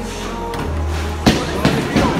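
Background music with a heavy, steady bass. A little past halfway a sharp thud, then two lighter knocks, as a bowling ball is released and lands on the lane.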